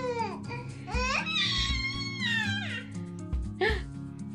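A baby whining and fussing in frustration while trying to crawl: a rising-and-falling cry at the start, a longer wavering one about a second in, and a short squawk near the end, over background music.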